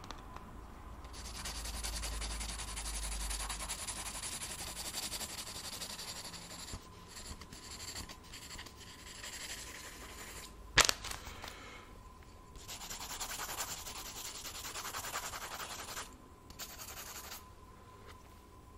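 Close-up scratching of a drawing tool on the paper of a spiral-bound notepad, in long runs of quick back-and-forth sketching strokes for hair, with pauses between runs. A single sharp tap falls about eleven seconds in.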